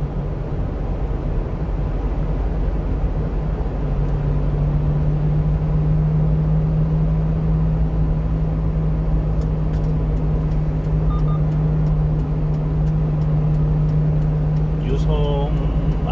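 In-cab sound of a 1-ton refrigerated box truck cruising on a highway: steady engine and road-noise drone, with a low hum that grows stronger about four seconds in. Faint, regular ticking at about three a second runs through the second half. A man's voice starts right at the end.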